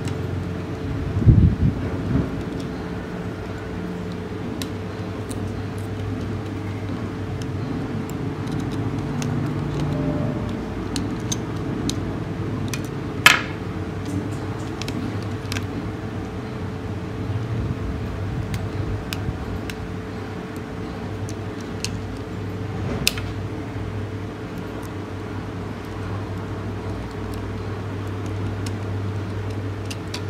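A few sharp plastic clicks and taps as the battery cover is handled and an AAA battery is fitted into a mini RC toy car, the sharpest click about halfway through, over a steady background hum.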